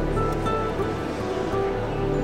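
Background music of soft, sustained, held notes that change gently from chord to chord at a steady level.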